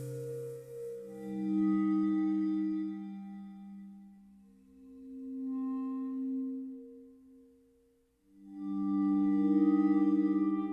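Recorded music of layered, looped bowed marimba: long sustained tones that swell and fade away in three slow waves, each on a shifting chord.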